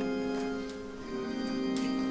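An organ holding sustained chords that change to a new chord about a second in. A few short sharp clicks sound over it, the loudest near the end.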